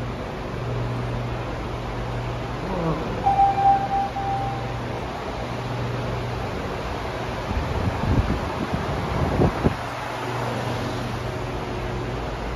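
Large pedestal fan running with a steady low motor hum, and gusts of its air rumbling on the microphone about eight seconds in. A short, high, held tone sounds a few seconds in.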